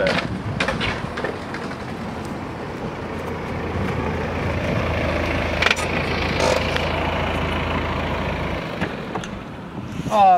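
A car running close by, a steady rumble that swells slightly midway and drops away near the end, with a single sharp click about five and a half seconds in.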